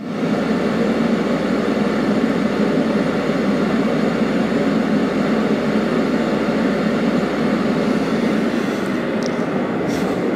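Alkota diesel-fired radiant heater starting up: its blower comes on suddenly and runs with a loud, steady rush of air before the burner flame has lit. A few faint clicks near the end.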